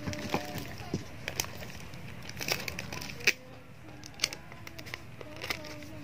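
Clear plastic wrapping and adhesive tape being handled around folded banknotes: scattered crinkles and light clicks, one or two a second.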